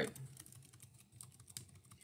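Faint, irregular light clicking of computer input: keys or mouse buttons being pressed.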